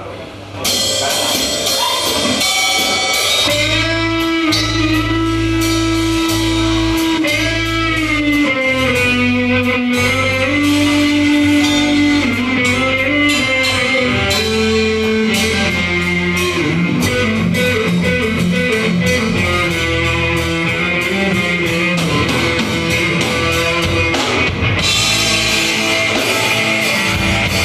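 Live hard rock band playing, starting about a second in: electric guitars over bass and a drum kit with steady cymbal hits, and a guitar line bending in pitch.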